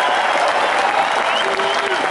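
Large concert audience applauding, a steady dense clapping of many hands.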